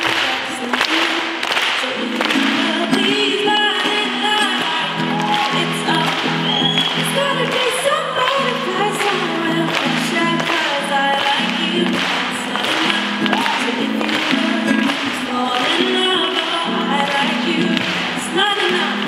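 Live performance of a woman singing into a microphone while strumming a ukulele, heard through the venue's sound system.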